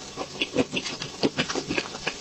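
Close-miked chewing of a mouthful of soft chocolate layer cake: quick, irregular wet mouth clicks, several a second.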